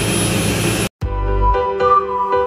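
Steady machine noise, a constant hiss over a low hum, from the running edge banding machine, cut off abruptly just before a second in. Music with held notes follows.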